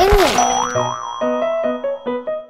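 A springy cartoon boing sound effect, its pitch wobbling up and down about half a second in, over light background music of short repeated notes.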